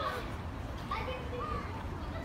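Young children's high-pitched voices: short calls and babbling without clear words, heard twice, over a steady low background hum.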